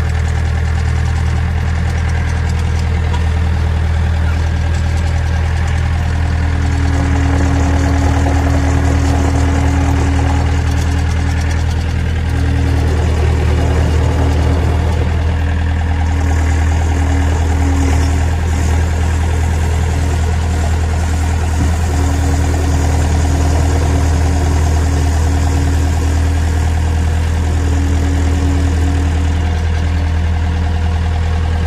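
2005 Volvo MC90B skid steer's Perkins diesel running steadily. From about six seconds in, a higher whine comes and goes in several stretches as the hydraulics work the loader arms and bucket.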